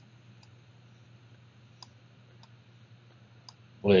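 About five faint, scattered clicks from handwriting on a computer screen with a pen input device, over a low steady hum.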